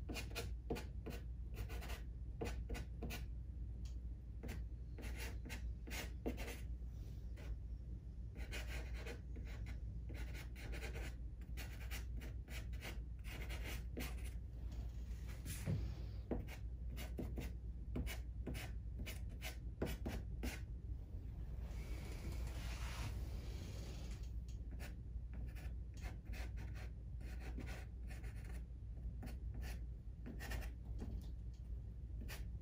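Soft pastel stick being dabbed and stroked over paper in many short, scratchy strokes, with a longer stretch of continuous rubbing a little past the middle.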